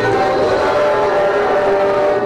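Children's choir singing with musical accompaniment, holding a sustained chord of several steady notes.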